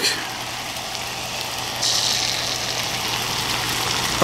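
Egg whites and yolk frying in butter in a hot pan: a steady sizzle that grows louder and brighter about halfway through.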